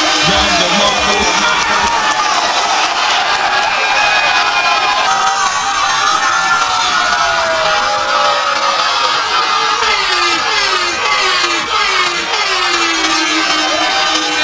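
Battle rap crowd cheering and shouting in a loud, sustained reaction, many voices yelling over one another without a break.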